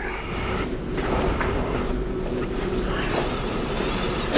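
Steady low electrical hum with room noise and no speech.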